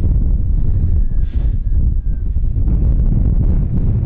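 Wind buffeting the microphone: a loud, steady, low rumbling noise.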